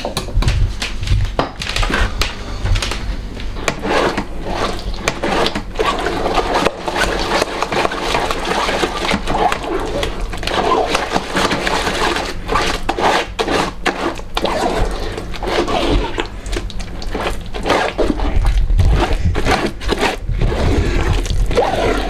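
Blended rosehip purée being rubbed through a sieve by a gloved hand: continuous irregular scraping and squelching of wet pulp against the mesh and wooden frame. It starts with a spoon scraping purée out of a blender jar.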